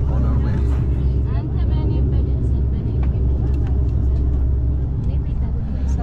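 Bombardier Q400's turboprop engines running on the ground, a loud steady low drone with a deep hum, heard from inside the cabin.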